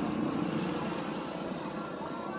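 Steady outdoor background noise, a low even rumble with no single event standing out.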